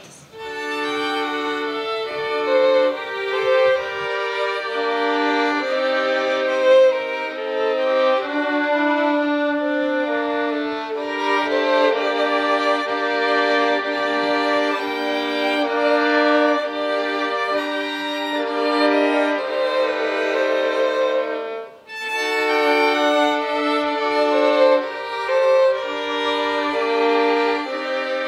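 Violins playing together, a melody in long held notes over a second line, with a brief pause about twenty-two seconds in.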